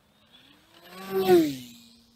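Small RC airplane's electric motor and propeller whining, rising in pitch and loudness to a peak about a second in, then falling and fading away.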